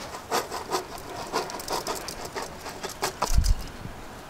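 Whole spices (cinnamon sticks, cardamom pods and cloves) tipped from a plate and scattered onto raw mutton in a large pot: a light, irregular patter of small clicks, with a low thud a little after three seconds in.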